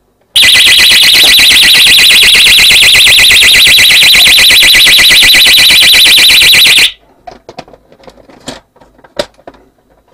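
Wireless external alarm bell of a Pyronix Enforcer kit sounding its siren: a very loud, high, fast-warbling tone that starts just after the opening and cuts off suddenly after about six and a half seconds, set off as the bell's cover is pulled away from its back plate. Light handling clicks follow.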